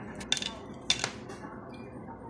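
A few sharp plastic clicks and taps as the pried-open casing and bare circuit board of a laptop charger are handled, in two small groups about a third of a second and about a second in.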